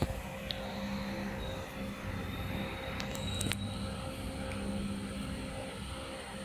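Steady low machine hum with a faint high whine, and a few sharp clicks about three seconds in.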